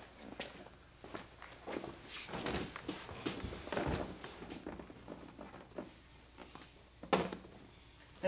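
Rope being wrapped around other lines and pulled through by hand: irregular rustling and rubbing of the rope, with soft knocks and a sharper tap about seven seconds in.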